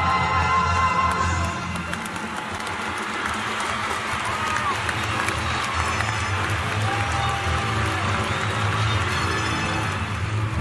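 A live band's held closing chord cuts off about a second and a half in, giving way to a concert crowd cheering and applauding, with the band's low notes continuing underneath.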